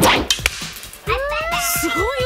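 A bow being shot: one loud, sharp crack right at the start with a short rattling smear after it, the bowstring's release and the arrow's flight, which the shooter calls a huge sound (すごい音). A voice reacts from about a second in.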